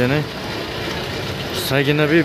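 A man's voice speaking briefly at the start and again near the end, over a steady background hum from a running motor.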